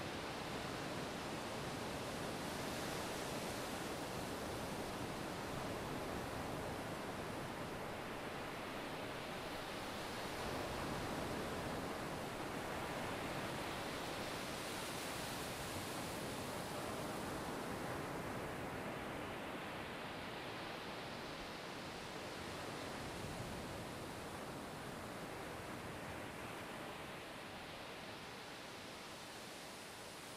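A steady wash of noise in a relaxation track, with no clear notes, swelling and ebbing slowly every several seconds like surf. It eases off slightly toward the end.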